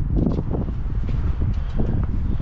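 Wind buffeting the microphone: a low, uneven rumble that rises and falls in gusts.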